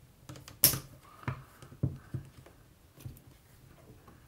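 Small, sharp metal clicks and taps as a screwdriver works at the bear-trap safety spring in a break-barrel air rifle's trigger assembly, five or six irregular ones, the sharpest just over half a second in.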